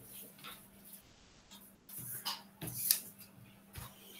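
A few faint, scattered clicks and knocks over a low steady hum, picked up by an open microphone on a video call. The loudest is about three seconds in.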